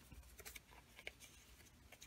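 Near silence, with faint handling of cardstock and a couple of light clicks as a brad fastener is pushed into the card.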